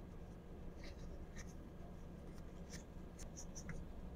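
Tissue paper wiping the plastic retaining ring of a trackball, heard as faint, scattered scratchy rustles and small ticks.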